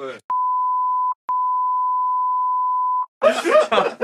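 A censor bleep, a steady 1 kHz pure-tone beep laid over a speaker's words. It sounds twice: a short beep of under a second, a brief break, then a longer one of nearly two seconds.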